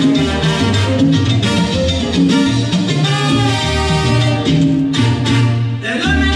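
Salsa music playing over loudspeakers for a dance routine, with a bass line moving in a steady, repeating pattern under a busy melody.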